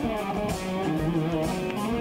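A live band playing, with an electric guitar taking a solo over drums and keyboards.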